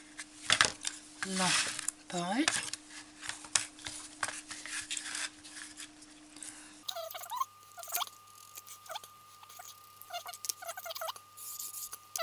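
Felt-tip marker squeaking on corrugated cardboard in short strokes as lines are ruled along a metal ruler, over a faint steady tone.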